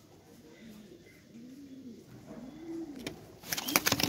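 Racing homer pigeons cooing: two low, rising-and-falling coos. Near the end comes a sudden loud flurry of wings flapping as the birds scatter in the cage.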